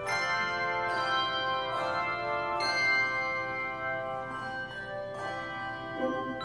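Handbell choir ringing chords in a slow hymn arrangement. The chords are struck roughly once a second, and each rings on and overlaps the next.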